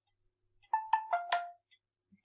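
A short electronic chime of four clear notes, two higher then two lower, like a ding-dong heard twice, sounding just after a post is published.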